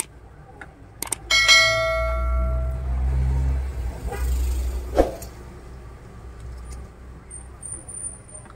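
A click followed by a bright bell chime that rings and fades over about a second and a half: the notification-bell sound effect of a subscribe-button animation. A low rumble runs under it for a few seconds, and a single sharp knock comes about five seconds in.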